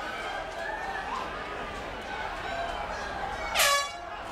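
Arena crowd voices, then near the end a single short blast of an air horn: the signal that round two is over.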